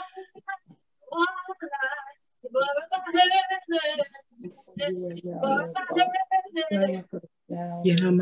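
A woman singing a worship song at a keyboard, her held notes wavering, with the sound cutting out completely for short moments between phrases.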